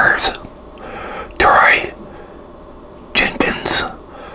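A man whispering close to the microphone in three short breathy phrases, with pauses between them.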